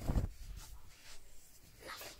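Fabric rustling and rubbing close to the phone's microphone as a top is pulled on, loudest at the very start, with a softer rub near the end.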